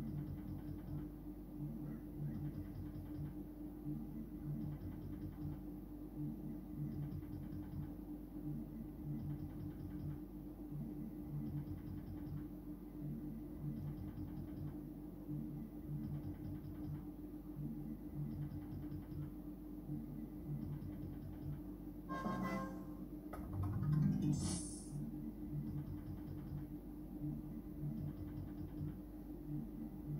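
Merkur Magie 2020 Deluxe slot machine playing its looping game music, a steady tone over a low repeating beat, as the reels spin. Two brief louder noises break in about 22 and 24 seconds in.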